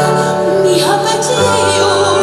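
A woman singing a copla with piano accompaniment; the piano's bass note drops lower about one and a half seconds in.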